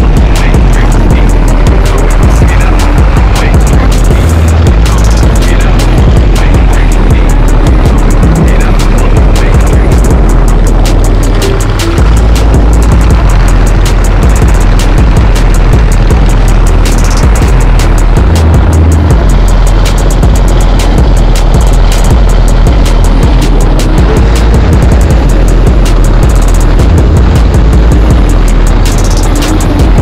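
V-twin chopper motorcycle engine running as the bike rides along, mixed with background music.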